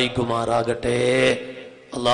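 A man preaching in a drawn-out, sing-song delivery, with a short pause near the end.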